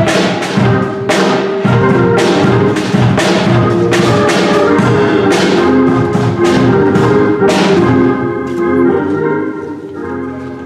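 Instrumental church music: organ chords held over drum and cymbal hits, easing to softer playing near the end.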